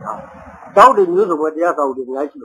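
A man speaking Burmese in an old recording of a Buddhist sermon; only speech is heard.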